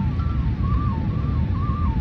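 Background music: a thin, wavering whistle- or flute-like melody of short held notes in a narrow high range, over a steady low rumble.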